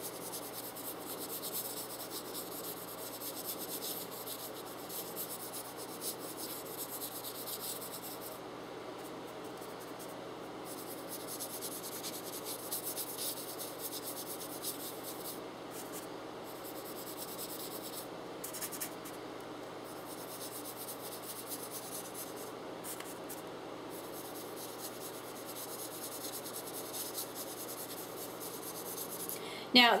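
A large soft brush rubbing powdered pastel over a model horse's surface: continuous dry scratching of bristles, with the brush dipped back into the pan of pastel dust now and then.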